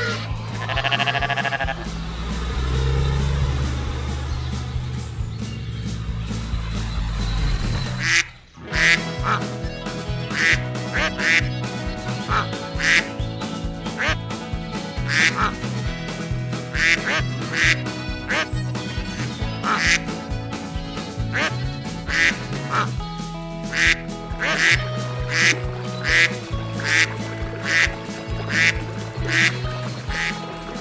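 Cartoon duck quacks, short and repeated about twice a second, over light background music with steady notes. They start after a brief drop about eight seconds in. Before that there is a low, steady drone with a few animal calls near the start.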